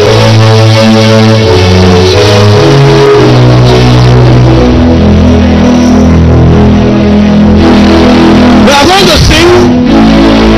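Loud live church band music over the PA: held keyboard chords over a bass line, changing every second or so. Near the end a man's voice comes in over the music.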